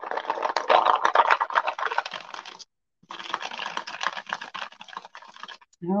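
Wooden beads coated in wet paint rolling and clicking against each other and a paper bowl as the bowl is swirled by hand: a dense rattle of small clicks that pauses for about half a second midway and then resumes.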